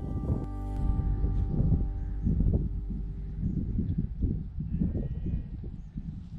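A sheep bleats once in one long call about half a second in, over gusty wind rumbling on the microphone.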